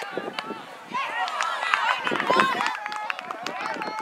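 Overlapping shouts and calls from children's and adults' voices at an outdoor soccer game, with a few short sharp knocks mixed in.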